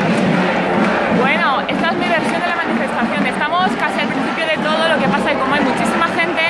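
Crowd of marchers talking at once, a babble of many voices with some close and clear.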